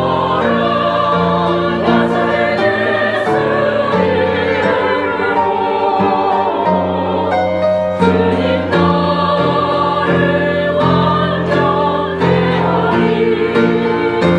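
Small church choir of mixed voices singing a sacred piece, accompanied by an upright piano.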